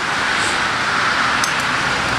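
Steady background hiss with a few faint clicks of a utensil stirring liquid plastisol in a glass measuring cup, mixing back in glitter that has sunk to the bottom.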